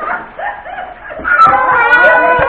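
Voices of a family group, then from about a second in a loud, high-pitched held vocal squeal.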